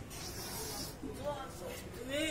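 A sharp, hissing breath lasting just under a second, taken in time with the movement of a Hindu push-up (dand).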